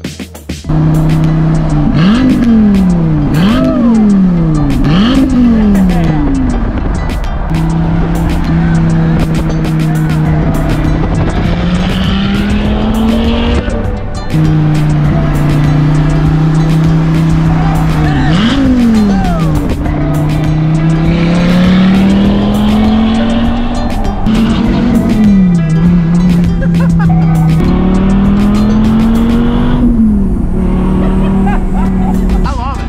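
Performance car engine accelerating hard, its revs climbing and dropping sharply three times in quick succession as it shifts up through the gears, then cruising at steady revs that rise slowly, with a few more quick drops later on.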